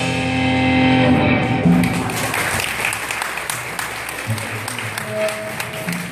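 A rock band's final chord on electric guitar and bass guitar ringing out with a cymbal wash, dying away over the first two seconds. An audience then applauds, with scattered claps.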